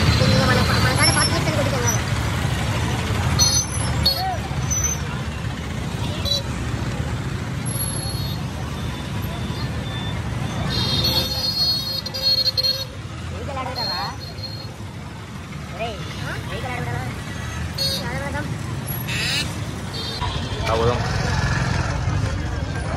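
Busy street ambience: a steady rumble of motor traffic, auto-rickshaws and motorbikes, with scattered voices of a crowd and short horn toots now and then.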